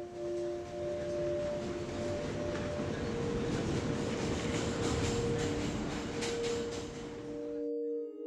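Subway train rumbling past with the clatter of its wheels on the rails, swelling to its loudest about five seconds in, with a few sharp clicks, and cutting off suddenly near the end. Soft, sustained ambient music tones continue under it.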